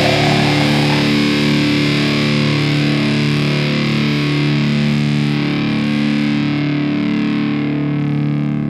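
Distorted electric guitar chord left ringing on its own after the drums stop, sustaining and slowly fading: the closing chord of an old-school death metal song.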